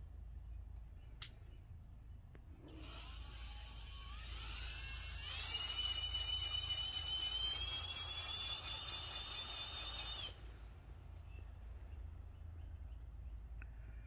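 A motor starts up with a whine that rises in pitch over about two seconds, runs steadily for about five seconds, then cuts off suddenly.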